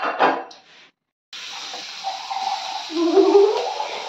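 Butter and chopped vegetables sizzling in a steel frying pan: a steady hiss that starts abruptly about a second in, after a brief voice and a moment of silence. A wavering pitched sound, like humming or music, rides over the hiss in the second half.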